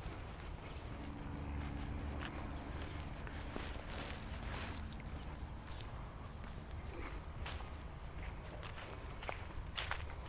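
Footsteps walking over grass strewn with dry fallen leaves, a steady run of small crunches and rustles. A faint low hum sits underneath from about a second in until past halfway.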